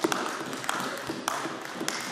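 Applause from members in a debating chamber: a steady patter of many hand claps.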